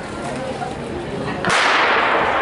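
A starting gun fires once, about one and a half seconds in: a sharp crack that rings on in the large indoor hall, signalling the start of the race. Voices murmur in the background.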